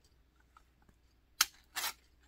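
Ring-pull lid of a metal food tin being opened: a sharp pop as the seal breaks about one and a half seconds in, then a short scraping tear as the lid starts to peel back.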